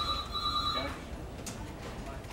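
An electronic ringing tone from shipboard equipment, two steady pitches held together for about a second with a brief break, then it stops. A low steady hum runs underneath.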